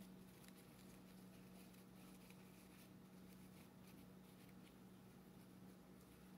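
Near silence: a faint steady low hum, with soft, faint rustles and clicks of a grosgrain ribbon bow being handled and adjusted.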